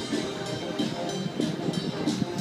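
Military band playing a march, brass holding sustained notes over intermittent drum strokes.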